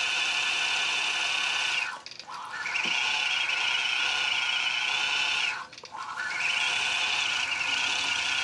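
Longarm quilting machine stitching out a quilting design: a steady, high-pitched machine whine with a slightly wavering pitch. It drops away briefly twice, about two seconds in and again near six seconds.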